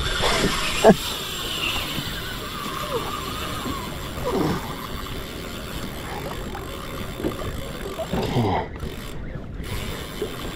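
Spinning reel's drag running as a hooked fish pulls line off against it in a fast run.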